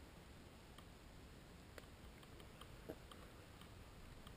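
Near silence: faint background noise with a couple of brief soft clicks, about two and three seconds in.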